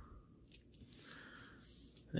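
Near silence, with a couple of faint clicks about half a second in from plastic toy pieces and a small chain being handled.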